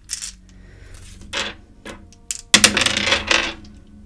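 Dice shaken and cast onto a hard surface: a few light clicks, then a loud clatter about two and a half seconds in that lasts about a second.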